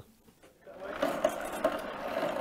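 Mobylette moped's two-stroke engine being turned over by its pedal crank without firing: a steady mechanical whirring that starts about half a second in, as it is spun to check for a spark.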